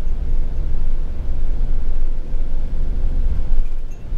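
Camper van heard from inside while driving, with engine and tyres on wet asphalt making a steady low rumble and a faint steady whine.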